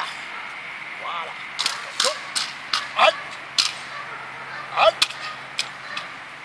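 Sharp cracks of a protection-training stick, about eight irregular strikes from around a second and a half in, used to test a young German Shepherd holding a bite pillow.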